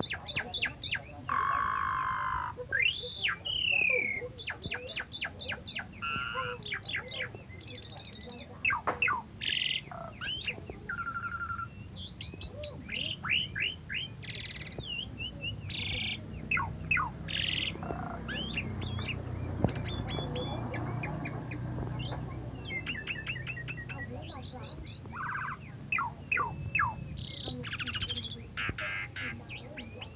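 Asian pied starling (jalak suren) singing a long, varied song of rapid clicking rattles, rising and falling whistled slides and harsh squawky notes, one phrase running into the next with only brief pauses.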